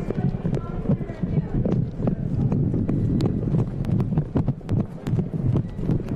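Footsteps of several people on a hard floor, irregular sharp steps over a low rumble, with indistinct talk.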